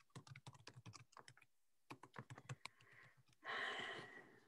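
Faint computer keyboard typing: quick runs of keystrokes with a short pause in the middle. Near the end comes a brief burst of rustling noise, the loudest sound.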